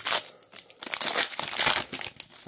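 The wrapper of a 2023-24 NBA Hoops Premium Stock basketball card pack being torn open and crinkled by hand. There is a short crinkle at the start, then a longer stretch of crackling from about a second in until near the end.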